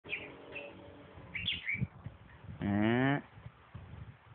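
Lovebird chirping a few short times in the first two seconds. This is followed by a louder, low-pitched call lasting about half a second, slightly rising in pitch, about two and a half seconds in.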